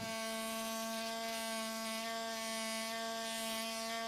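Pneumatic air scribe buzzing steadily at one unchanging pitch as it chips rock matrix away from fossil dinosaur bone.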